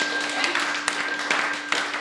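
A small audience clapping after an acoustic guitar song, the claps scattered and uneven, with a steady low tone held underneath.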